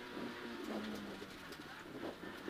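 Suzuki Swift rally car's engine heard faintly inside the cabin, a steady low hum that drops a little in pitch about a second in.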